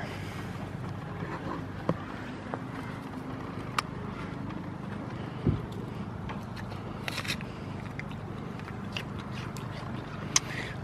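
Steady low drone of nearby heavy machinery, with scattered light clicks and crunches from a goat biting an apple on top.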